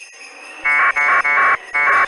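Radio hiss, then four short, loud buzzing bursts of packet-radio data tones, each under half a second, from about two-thirds of a second in.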